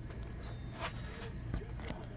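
Trading cards sliding against one another as a stack is flipped through by hand, with two soft brushing swipes, over a steady low hum.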